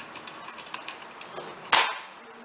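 Hot glue gun clicking in a string of small ticks as its trigger is worked to feed glue, then a short loud clack near the end.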